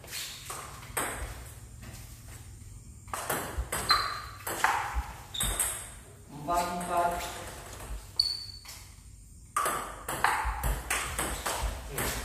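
Table tennis rally: a celluloid-type ball clicking off paddles and bouncing on the table in quick sharp strikes, in two runs of play with a short pause between them.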